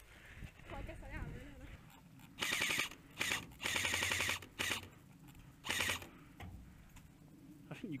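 Airsoft rifle firing five quick full-auto bursts over about three and a half seconds, each a rapid string of shots, the longest near the middle.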